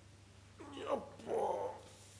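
A man's voice making two short wordless cries as he doubles over and goes down to the floor. The first cry slides in pitch; the second is rough and breathy.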